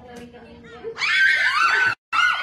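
A person's loud, high-pitched scream that starts about a second in and is held for nearly a second, after a quieter start with voices.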